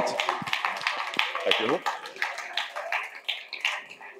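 Audience applauding, the clapping thinning out and dying away toward the end.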